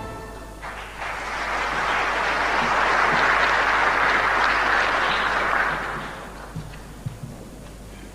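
Audience applause after a choral piece ends, starting about a second in, holding steady, and dying away around six seconds in. A few stray knocks follow.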